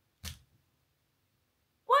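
Near silence, broken by one short, sharp noise about a quarter second in; a child's voice starts right at the end.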